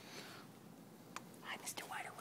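A person whispering softly, a few short breathy strokes in the second half.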